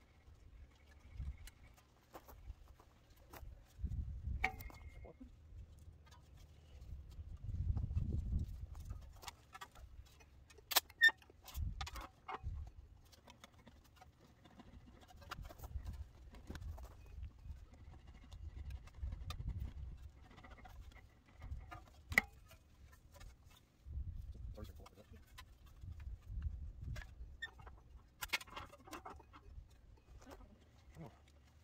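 Sheet-metal panel being shaped on a homemade English wheel, rolled back and forth between the upper wheel and the lower anvil die. Each pass gives a low rumble, coming in swells every few seconds, with a few sharp clicks between them.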